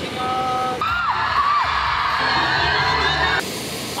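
Music with a loud burst of crowd cheering and screaming from about a second in, stopping shortly before the end.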